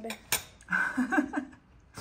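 Cutlery clinking against a takeaway food container during a meal: one sharp clink, followed by a short, muffled bit of voice.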